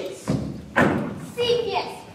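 A single heavy thud a little under a second in, followed by a voice speaking.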